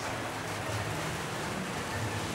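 Steady, even background hiss with a faint low hum underneath, in a pause between spoken sentences.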